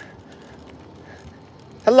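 Faint outdoor background with a few light scattered ticks, then near the end a man calls out a drawn-out "hello".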